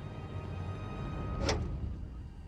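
Tense film score: a low sustained drone under a thin held high tone, broken by a short, sharp rising hit about one and a half seconds in.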